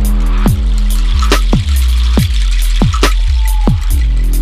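Dark electronic music in an exotic trap and dubstep style: a heavy sustained sub-bass under deep kick drums that drop in pitch, landing about every half second or so, with hi-hat ticks. A short held tone comes in a little after the middle.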